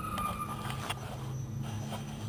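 A steady low hum, with a faint thin whine in the first second and a light click about a second in.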